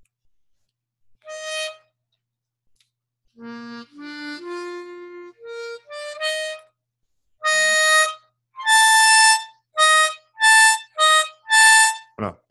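Harmonica demonstrating the tritone, the fa–si interval: after a few quieter scattered notes, six loud single notes alternate between two pitches a tritone apart. This is the 'diabolus in musica' interval, which is 'pas très joli mélodiquement'.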